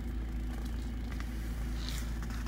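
Steady low rumble of a UAZ Patriot's engine idling, heard from inside the cabin, with a few faint clicks.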